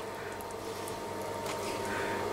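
Knife cutting soft, boiled cauliflower florets on a wooden chopping board, faint and soft, with a light tap about one and a half seconds in, over a steady low hum.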